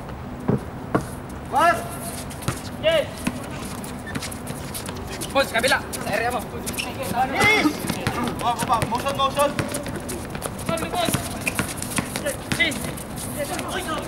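Basketball play on an outdoor hard court: a ball bouncing and players' running footsteps as irregular knocks, mixed with players shouting.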